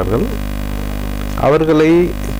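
Steady electrical mains hum, a low buzz with evenly spaced overtones, carried loudly through a pause in a man's speech; his voice comes back about a second and a half in.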